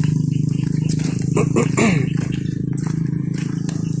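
A motor running steadily with a low, even hum. A brief voice sounds about one and a half seconds in.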